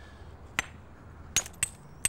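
Flint being knapped: three sharp clinking strikes on the flint, the first about half a second in and the last two close together near the end, each with a short high ring.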